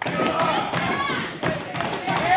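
A few thuds of wrestlers' bodies hitting each other and the ring during a grapple, over crowd voices calling out in the hall.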